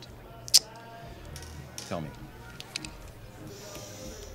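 A sharp click about half a second in, then faint scratches of a pen writing on a check, over quiet film score.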